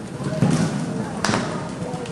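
Horse's hooves thudding on the arena footing as it lands after clearing a show-jumping fence and canters away, with a sharper knock about a second in.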